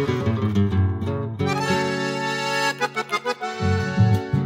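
Chamamé music played instrumentally by an accordion-led ensemble with guitar. Accordion chords are held steady through the middle, then the rhythmic plucked accompaniment comes back in near the end.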